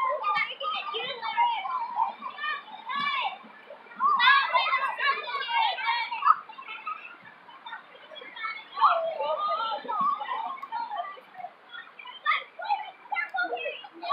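Children's voices, chattering and calling out as they play, with short lulls between bursts.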